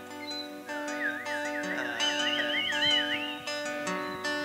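Acoustic guitar playing plucked notes and chords, with someone whistling a wavering, vibrato-laden melody over it from about a second in until shortly before the end.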